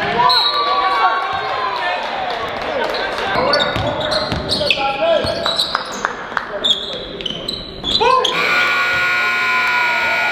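Live basketball game sound in a reverberant gym: sneakers squeaking on the hardwood, the ball bouncing on the court, and players calling out.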